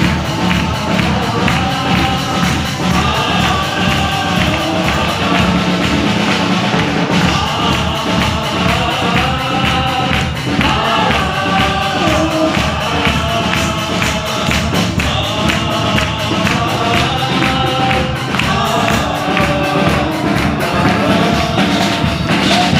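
Congregation singing a Hindi worship song with a lead singer on microphone, backed by a band with drum kit and acoustic guitar, over a steady beat of hand-clapping.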